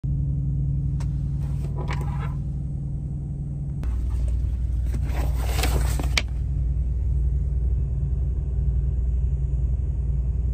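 Steady low rumble of an idling semi-truck's diesel engine, heard from inside the cab, with two brief bursts of hiss about a second in and again around five seconds.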